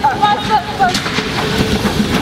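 Young voices calling out without clear words, the pitch sliding up and down, in the first second and again briefly near the end.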